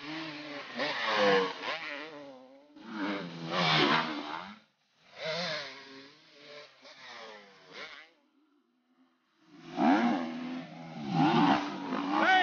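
Dirt bike engines revving as riders race up a trail, with the throttle rising and falling in several bursts. There is a short lull about two-thirds of the way through before another bike comes through.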